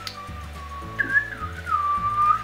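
Whistling: a single clear tone holding one note, stepping up about a second in and sliding back down, over quiet background music with a repeating bass line.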